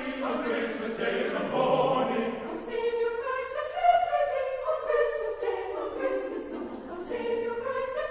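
A choir singing slowly, holding long notes.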